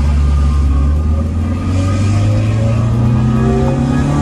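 Car engine heard from inside the cabin while driving, running steadily, then climbing in pitch as the car accelerates over the last couple of seconds.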